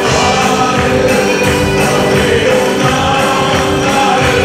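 Live gospel worship music: men singing as a group into microphones, backed by electronic keyboards and a steady beat of hand percussion.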